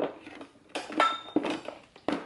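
Hard plastic parts of a hooded hair dryer knocking and clicking as the dryer head is fitted onto the top of its stand pole: several sharp knocks, the loudest about a second in with a brief ring.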